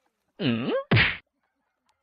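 Two short animal calls from a cat and dog facing off: a pitched call whose pitch dips and then rises, then a brief, harsher, noisier sound.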